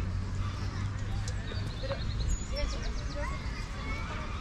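Park ambience: voices of people nearby but indistinct, small birds chirping, over a steady low rumble.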